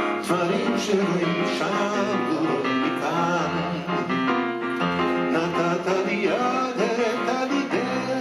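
Grand piano played live, with a man singing along over the chords.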